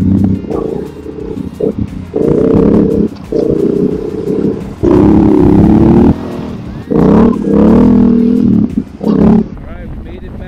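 Yamaha Ténéré 700's parallel-twin engine heard from on the bike, its note swelling and dropping in spells of one to two seconds as the throttle is opened and closed on a downhill run.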